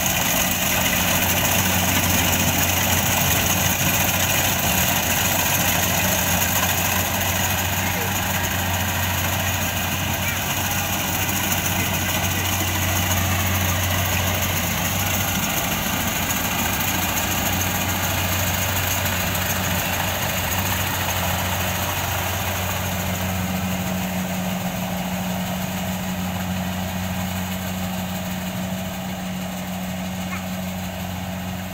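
Rice combine harvester running steadily as it cuts and threshes: an even engine hum with several steady tones over the rattle of the threshing machinery, fading slightly near the end as it moves away.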